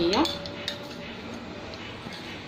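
Metal cake server clicking lightly against a wooden board and a paper plate as a slice of semolina bread is lifted: a few sharp clicks in the first second, the clearest about two-thirds of a second in.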